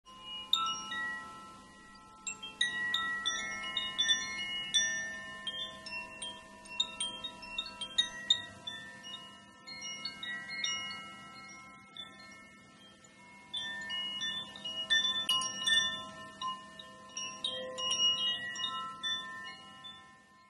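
Chimes ringing: many high, clear notes struck at random and left to ring on, with brief lulls about two seconds in and again about twelve seconds in.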